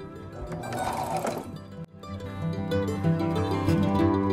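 Electric domestic sewing machine running briefly, stitching through sweater knit fabric, over background music of plucked strings. The music cuts out sharply about two seconds in, then comes back louder and carries on alone.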